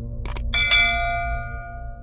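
Subscribe-button sound effect: two quick mouse clicks, then a bright bell ding that rings on and fades away over about a second and a half, over a low steady drone.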